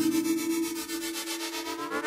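Minimoog Voyager analog synthesizer music: sustained notes held under a fast, even pulsing texture, growing quieter in the first second.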